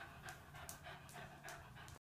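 Small curly-coated dog panting quickly and faintly, about five short breaths a second.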